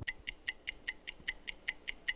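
Game-show countdown timer sound effect: a steady, rapid ticking of about five sharp, bright ticks a second, marking the time left to answer.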